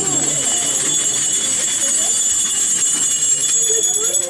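Small metal bells on processional liturgical items jingling continuously in a high shimmer, with voices of the procession underneath.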